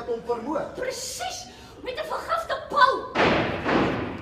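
Actors speaking on stage, then a sudden loud thump about three seconds in that rings on for just under a second.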